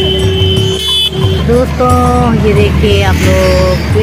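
Music with strong bass: a held instrumental note, then a singing voice entering about one and a half seconds in with long held and sliding notes.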